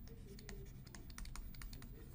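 Faint, irregular clicking and tapping of a pen stylus on a drawing tablet as a word is handwritten.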